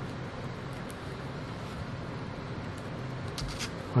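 Steady low background hiss with faint handling sounds as a hook-and-loop strap is threaded through a plastic charger bracket, with a few small clicks near the end.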